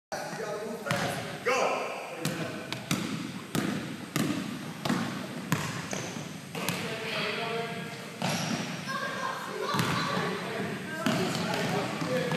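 Basketballs bouncing on a hardwood gym floor: about a dozen irregular thuds, echoing in the hall, under the indistinct voices of the players.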